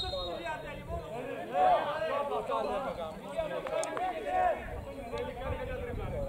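Men's voices talking and calling out, more than one at a time, with a short sharp click about four seconds in.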